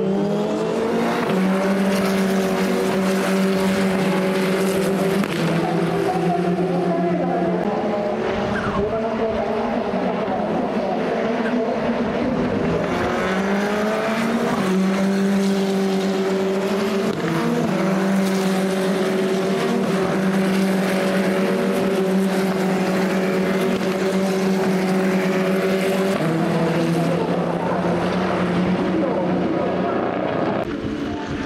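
Formula Regional single-seater race car engines running at high revs. Steady engine notes shift in pitch several times, and rising revs come over them as cars accelerate.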